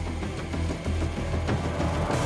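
Background music from a drama score, a quiet underscore carried by a steady low bass.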